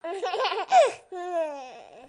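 A high-pitched, childlike giggle: a quick run of short laughs, then a longer laugh falling in pitch.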